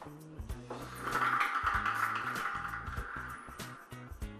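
Background music with a steady beat. About a second in, a rushing rattle of balls tumbling inside a hand-cranked plastic ball-draw drum rises over the music for about two seconds, then fades.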